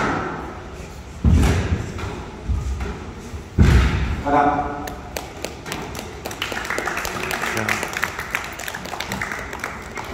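Squash rally ending on a glass court: a sharp crack, then two heavy thuds, then a short shout. From about halfway through, the crowd claps and chatters.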